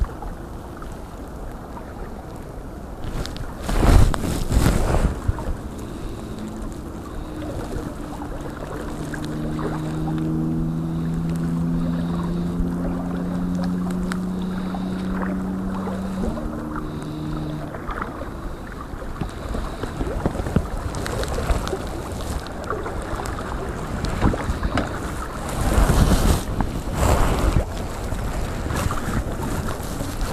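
Wind buffeting the microphone over the steady rush of a flowing river, with strong gusts about four seconds in and again near the end. A few steady low hum tones are held for several seconds in the middle, shifting once.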